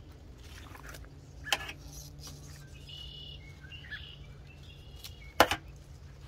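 Garden shears snipping twice, with a short sharp click about a second and a half in and a louder one near the end. Faint bird chirps come in between, over a steady low background hum.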